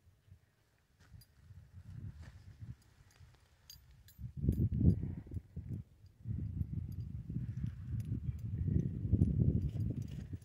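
Low, irregular rumbling and buffeting on the phone's microphone as it is carried and swung about over the forest floor, beginning about four seconds in, with a few faint light ticks.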